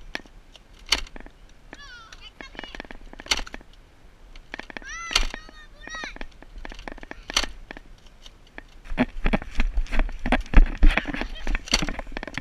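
Children's high-pitched shouts from a distance, with scattered sharp clicks and knocks. In the last few seconds comes a quick, louder run of thumps and knocks as the camera holder moves.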